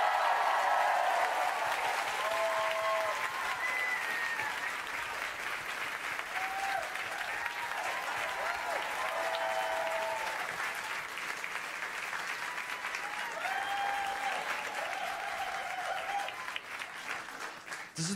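Audience applauding, with voices calling out over the clapping. The applause is loudest at first and dies away near the end.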